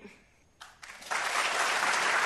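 A brief hush, then audience applause begins about a second in and holds steady.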